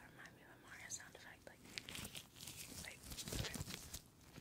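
Disposable rubber gloves rubbing, stretching and crinkling as the hands move close to a microphone. The rubbing grows louder and fuller near the end.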